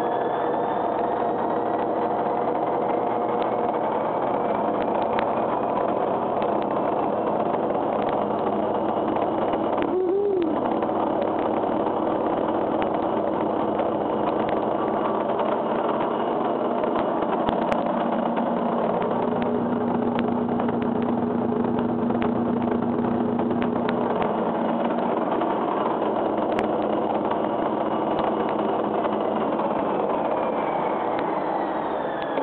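A machine running steadily, a loud even whir with several steady hums underneath. About ten seconds in there is a brief wavering tone.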